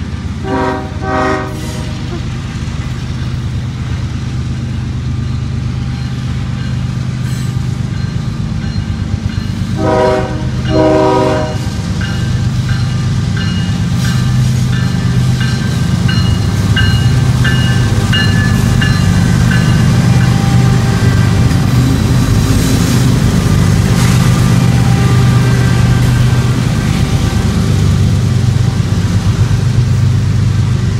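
Union Pacific GE diesel locomotives approaching and passing close by, with two pairs of short horn blasts, one at the start and one about ten seconds in. The diesel engines' rumble grows louder from about twelve seconds on as the lead units go by, followed by the loaded coal hopper cars rolling past.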